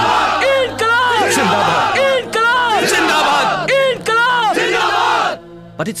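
A crowd of men shouting together in loud, repeated rising-and-falling cries, like slogans raised in unison. It cuts off suddenly near the end.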